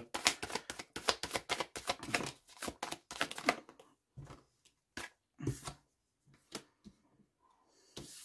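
A tarot deck shuffled by hand: a quick run of card snaps for about four seconds. Then a few separate clicks and slaps as cards are drawn and laid down on a wooden table.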